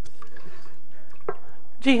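Wooden spatula stirring milk and cocoa powder in a nonstick saucepan, faint liquid swishing with a few small clicks, before a woman's voice begins near the end.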